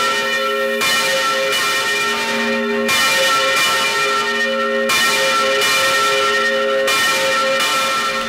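Large church bell pealing, heard from just beneath it in the tower: four loud strikes about two seconds apart, each ringing on into the next. The ringing is overwhelming at this distance.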